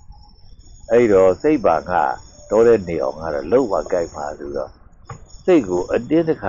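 A man's voice delivering a sermon in Burmese, starting about a second in and pausing briefly near the end, over a faint steady high-pitched ringing in the background.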